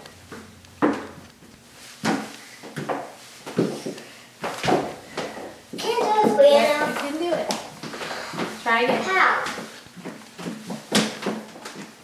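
Footsteps of heeled shoes clicking on a hardwood floor, a slow step roughly every second, with a child's voice sounding briefly about halfway through and again near nine seconds.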